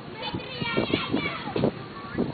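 Several people's voices talking over one another, with a high-pitched voice in the first second.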